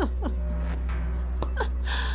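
A woman's breathy vocal sounds between lines of dialogue: a brief falling voiced breath just after the start, and a sharp intake of breath near the end, over a low steady drone.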